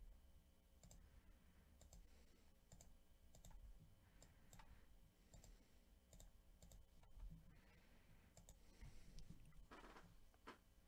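Faint, irregular clicks of a computer mouse over near silence.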